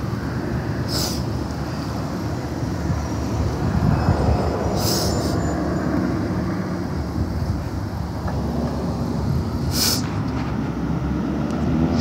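Road traffic passing on a multi-lane road: a steady low rumble of tyres and engines. Three short scratchy noises break in, about a second in, around five seconds and near ten seconds.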